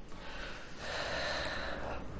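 A man's audible breath, a soft airy sound lasting about a second.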